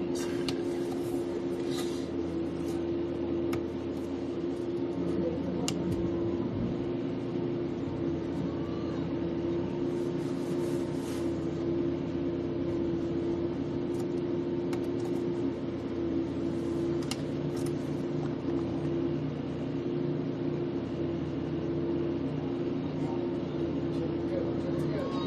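A steady low hum with a constant pitch, with a few faint scattered clicks over it.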